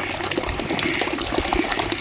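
Water running and splashing in a fish pond: a steady rush with many small splashes throughout.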